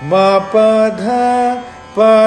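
A man singing three sargam notes, ma, pa, dha, each held briefly and rising step by step. It is one step of a three-note ascending pattern exercise.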